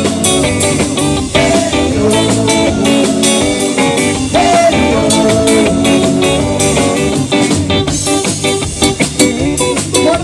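Live rock band playing, guitars to the fore over a steady drum beat.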